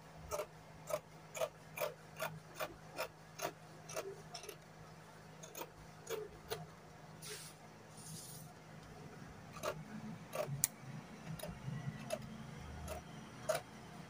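Scissors snipping through fabric: a steady run of crisp snips, about three a second, for the first few seconds, then scattered snips with soft rustling of the cloth as it is moved.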